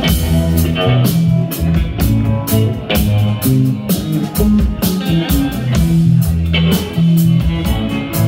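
Live instrumental rock played by an electric guitar, an electric bass and a drum kit together, with held bass notes, guitar lines and a steady drum beat.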